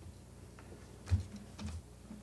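A few light clicks and taps, with one louder knock about a second in and a softer one about half a second later.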